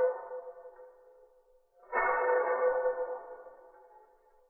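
A violin bow drawing a ringing, steady-pitched tone rich in overtones. One tone is dying away at the start; a second starts suddenly about two seconds in, holds for about a second, then rings down.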